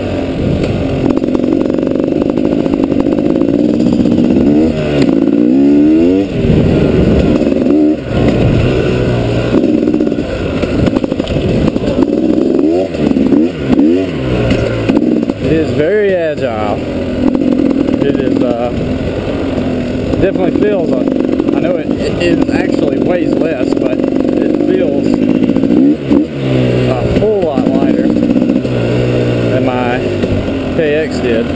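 2012 KTM 250 XCW two-stroke single-cylinder dirt bike engine under way on a dirt trail, its revs climbing and dropping repeatedly with the throttle and gear changes, with brief dips when the throttle is shut.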